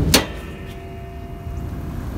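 Car hood being raised: a sharp metallic click from the hood latch right at the start, then low background noise with a faint steady hum.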